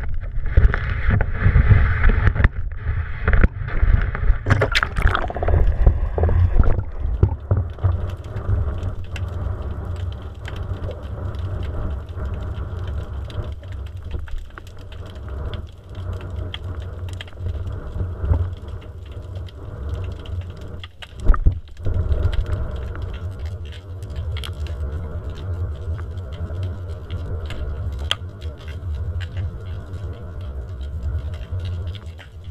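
Underwater camera audio: a steady low rumble of water moving against the camera housing, with scattered faint clicks. Over the first six or seven seconds a louder rushing hiss as the camera goes down through the surface, and a single louder knock a little past the middle.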